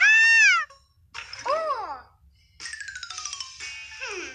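Cartoon soundtrack effects: a loud, high call that rises and falls, then a falling whistle-like glide about a second in, then a long descending buzzy sweep near the end.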